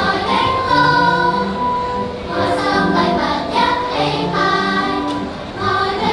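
Music: a choir singing, with sustained sung notes moving in steps.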